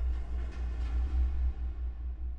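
Dark, low droning film score: a deep, unevenly pulsing rumble under faint sustained tones.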